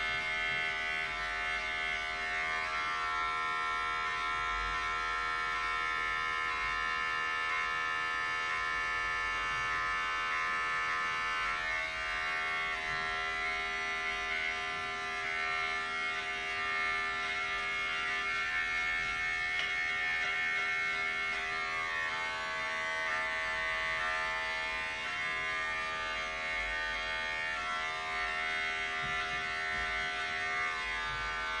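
Corded electric hair clipper buzzing steadily while cutting hair, its tone shifting slightly as the blades move through the hair.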